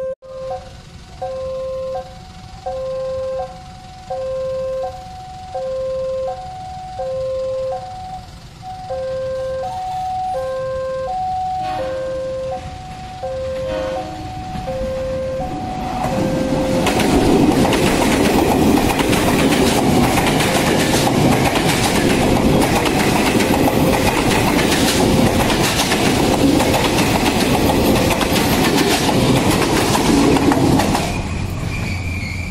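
A railway level-crossing warning bell sounds an alternating two-note chime, about one cycle a second. About halfway through, a KRL electric commuter train passes close by, and its loud running noise over the rails drowns out the chime.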